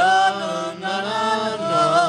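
Wordless singing: long held notes that slide between pitches and take on a wide vibrato near the end, over a steady low drone.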